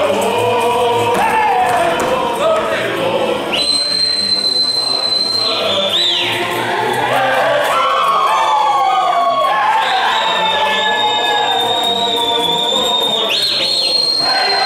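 Romanian folk ensemble singing in chorus during a ring dance, with long, shrill, steady whistles held for a couple of seconds each: three times, a few seconds in, again past the middle, and near the end.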